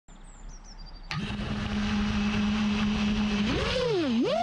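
FPV quadcopter's brushless motors and propellers start up suddenly about a second in and run at a steady idle hum, then rise in pitch near the end as the throttle is raised for takeoff. A few faint high stepped tones come before the motors start.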